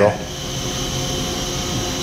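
Steady mechanical hum of running machinery in a saw-filing shop, an even drone with a faint constant tone and no separate strokes or knocks.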